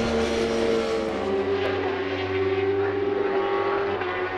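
JSB1000 racing superbikes at high revs: one goes by on the near straight at the start, followed by a steady, high engine note from the machines still circulating.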